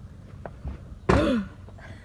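A single brief vocal sound from a person about a second in, short and pitched, like a grunt or a clearing of the throat, over quiet room noise.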